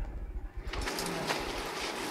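Steady background noise of an office room, an even hiss with a few faint ticks, after a low rumble in the first half-second or so.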